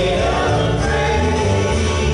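Group of voices singing a gospel praise song together over instrumental accompaniment with sustained bass notes.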